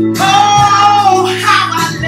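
A woman singing a gospel song, holding one long note that starts just after the start and gives way to a new phrase about a second and a half in, over backing music with a steady low bass line.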